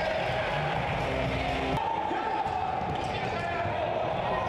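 Sound of an indoor futsal match: the ball being kicked and bouncing on the hard court, over a steady crowd noise in the sports hall. The sound changes abruptly a little under two seconds in.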